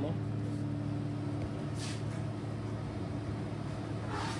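Electric guitar amplifier humming steadily with the guitar plugged in and not being played: a constant low hum made of several pitches, from its single-coil and humbucker pickups. There is a brief rustle about two seconds in.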